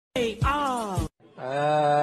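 A person's voice making two drawn-out wordless calls. The first falls in pitch, and the second is held on a steady note.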